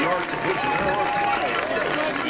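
Several spectators' voices yelling and cheering over one another, with one long held shout near the middle.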